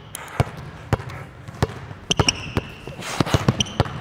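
A basketball bouncing on a hardwood gym floor: several dribbles at an uneven pace, with a crossover, a hold and a reset.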